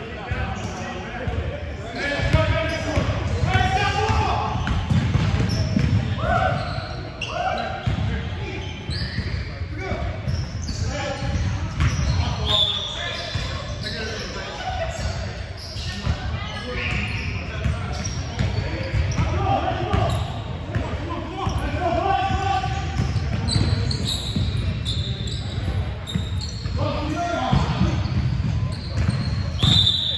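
Basketball being dribbled on a hardwood gym floor during a game, with repeated thuds, players' voices calling out, and the sound echoing around the large hall.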